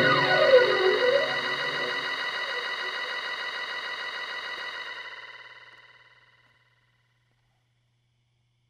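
Electronic music: a synthesizer chord run through effects, its tones sweeping up and down in pitch, dying away and fading out about six seconds in, leaving near silence.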